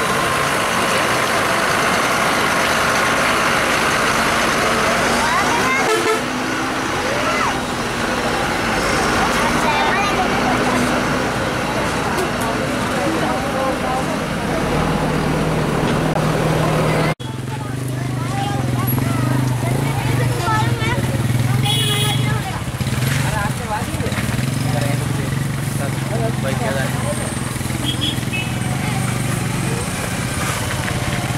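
Heavy diesel truck engine running at low speed, with people's voices calling out around it. The sound breaks off abruptly about halfway through, and a steady low engine drone carries on afterwards.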